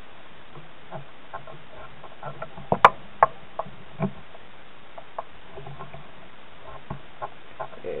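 Scattered light clicks and ticks from hands handling thread and flash material on a fly-tying hook, over a steady low hiss. The loudest is a quick cluster of sharp clicks about three seconds in, with single ticks after it.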